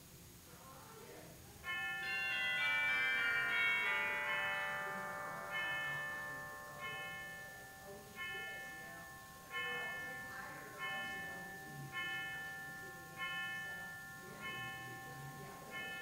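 Bell ringing: a quick cascade of chimes about two seconds in, then a single bell struck at an even pace about every second and a quarter, each stroke ringing out and fading.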